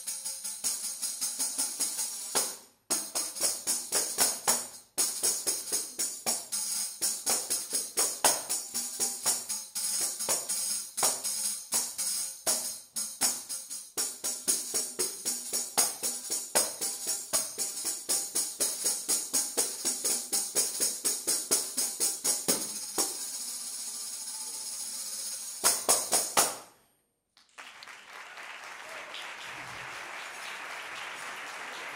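Two tambourines played as a duet, with fast strikes and jingle rattles trading back and forth, a steady jingle roll near the end and a few last hard strikes. The music cuts off sharply, and audience applause follows over the last few seconds.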